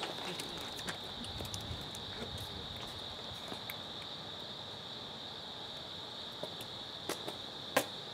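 A steady, high-pitched insect chorus, like crickets, with scattered sharp clicks and knocks, the loudest two near the end.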